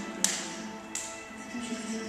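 Live piano music with sustained notes, broken by sharp slaps of a barefoot dancer's feet on the dance floor. The loudest slap comes about a quarter second in, and another just before a second in.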